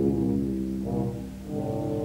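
Live jazz-orchestral music: a brass ensemble holding sustained chords, with a new chord entering about one and a half seconds in.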